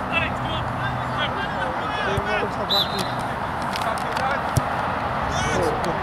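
Players' voices calling across an open football pitch, with a single sharp thud of a football being struck by a boot about four and a half seconds in.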